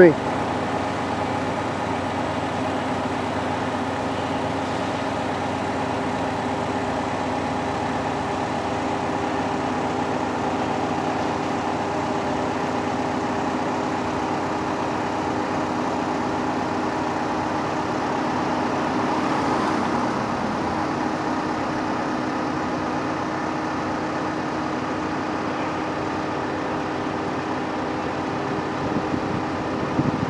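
Liebherr LTM 1220-5.2 mobile crane's diesel engine running steadily, with a slight swell in level about two-thirds of the way through.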